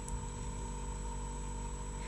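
Steady electrical hum and faint hiss from the recording chain, with several constant tones and no other sound.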